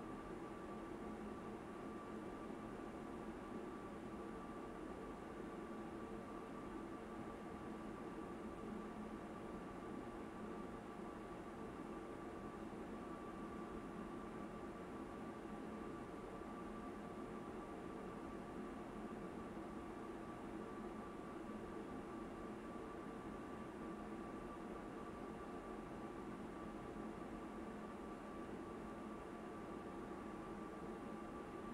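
Faint, steady hum and hiss of room or equipment noise, with a thin, constant high whine running under it; the mixing itself makes no distinct sound.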